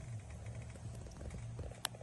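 A small black dog breathing in its sleep, a low steady rumble, with one sharp click near the end.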